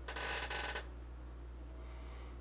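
A short breath out from the man at the microphone during the first second, then quiet room tone with a steady low hum.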